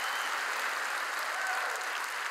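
A large audience applauding with steady, even clapping.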